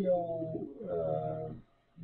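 A man's voice holding two long, level hesitation sounds, like a drawn-out "uhh", with a short break between them. The voice falls quiet just before the end.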